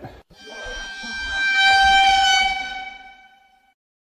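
A horn sound effect: one steady horn note that swells to its loudest about two seconds in, then fades out before the end.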